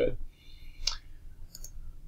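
A computer mouse clicking: one sharp click about a second in, then a couple of fainter clicks.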